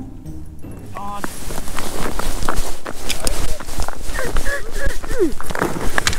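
Boots crunching and knocking on the lake ice in a quick, irregular run of steps, starting about a second in, with voices partly heard over it.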